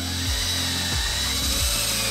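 DeWalt cordless drill running steadily as a quarter-inch bit bores through the plastic dash bezel.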